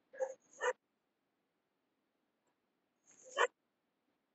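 Three short, pitched yelp-like calls, two in quick succession right at the start and a third about three seconds in, coming through video-call audio.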